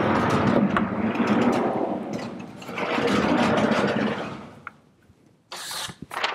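Sliding lecture-hall blackboard panels rumbling along their runners as they are pulled up and down, in two long pushes over about four seconds, followed by a brief scrape near the end.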